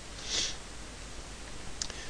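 A man breathes in sharply through the nose about half a second in, then a faint single click comes near the end, over a steady low electrical hum.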